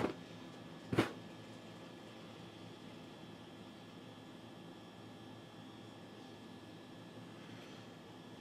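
A short puff of breath about a second in, blowing out the flame on a burning shot of 151 rum and Kahlua, followed by faint steady room tone.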